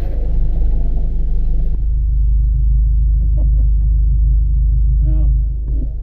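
Steady low rumble of a car's engine and road noise heard inside the cabin, with a brief vocal sound about five seconds in.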